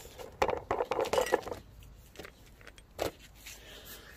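Metal items being handled: a burst of metallic clinking and rattling for about a second and a half, then a single click about three seconds in.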